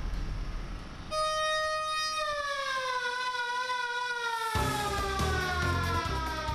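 A siren tone, about a second in, holds one pitch for about a second and then slowly falls in pitch as it winds down, over background music.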